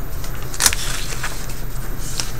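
Washing machine running: a steady low hum, with a single sharp click about two-thirds of a second in.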